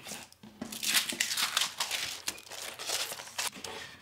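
Rustling and crinkling of paper and card as prints and glassine interleaving sheets are handled in a cardboard archival print box, with a few light taps; it starts about half a second in.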